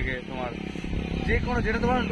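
A man speaking in short phrases over a steady low engine rumble, like a motorcycle or other vehicle running near the microphone.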